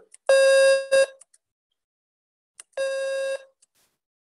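Computer beeps from a DOS program running in DOSBox: a loud, steady half-second beep and a short one just after it, then a quieter beep about three seconds in. They sound as the program pops up its prompts.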